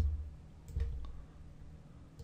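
Computer mouse clicking twice, at the start and just under a second in, each click with a dull low thud, as a circle is drawn in a drawing program.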